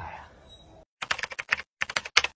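Computer-keyboard typing sound effect: a quick, irregular run of key clicks starting about halfway through, after the faint fading tail of a man's voice.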